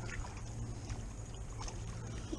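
Faint splashing and rippling of water as a hooked sunfish is reeled across the lake surface toward the bank, over a steady low rumble.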